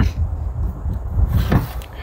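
Handling noise as a deer shed antler is picked up off a car's trunk lid: a low rumble on the microphone and one short knock about one and a half seconds in.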